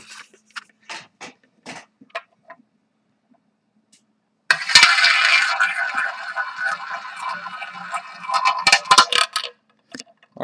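Small tabletop roulette wheel spun: starting about four and a half seconds in, the ball runs round the track with a continuous rattle for about five seconds, then clacks sharply among the pockets before settling. A few light clicks come earlier.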